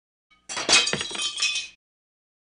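Sound effect of a dish shattering: a crash of breaking crockery with several sharp impacts and clinking, ringing shards. It starts about half a second in and cuts off abruptly just over a second later.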